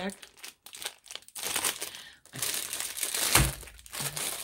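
Clear plastic packaging crinkling as it is handled, in irregular crackles through the second half, with a single thump about three and a half seconds in.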